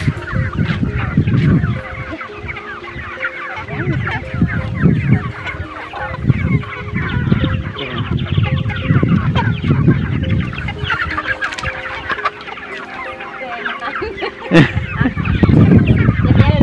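A large flock of village chickens clucking and chirping continuously as they crowd in to be fed, with recurring low rumbles underneath.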